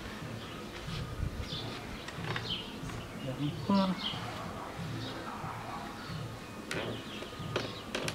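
Scattered light metallic clicks of a 15 mm wrench working the rear axle nut of a fixed-gear bike as the rear wheel is tightened and set straight in the frame.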